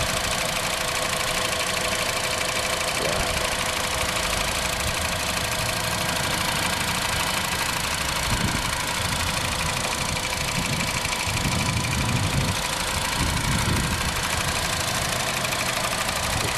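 Honda CR-Z's 1.5-litre four-cylinder gasoline engine idling steadily under the open hood.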